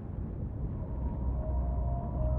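Low, steady rumble of erupting lava fountains, with music starting to fade in faintly near the end.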